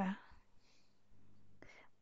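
A woman's quiet speech trails off, then a pause with a faint steady hum and one short soft sound near the end.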